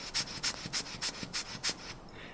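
Rubber ear-syringe bulb squeezed repeatedly, forcing air through a fuel cell's gas port to blow out excess water: a rapid series of short, airy hissing puffs, several a second.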